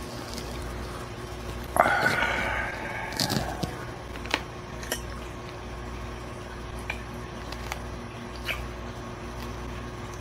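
A person chewing a dried Asian forest scorpion, with faint scattered crunches and clicks over a steady low hum. About two seconds in there is a short vocal murmur that fades away.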